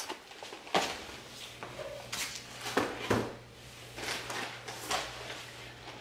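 Cardboard grocery boxes and packaging being handled and set down on a kitchen countertop: a string of light knocks and rustles, with a faint low hum underneath from about a second in.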